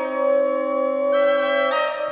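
Orchestral music: a sustained chord held steadily, its upper notes shifting about a second in and again near the end.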